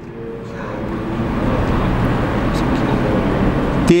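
A motor vehicle going by: a steady engine-and-road noise that grows gradually louder over a few seconds.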